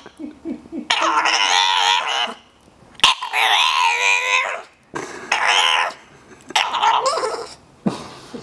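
A bulldog puppy vocalizing in a series of drawn-out, wavering calls: four main calls of about half a second to a second and a half each, with short gaps between them.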